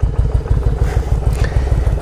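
Yamaha Virago 1100's air-cooled V-twin idling through aftermarket Vance & Hines exhaust pipes with a deep, rapid pulse, running smoothly just after a cold start without the choke.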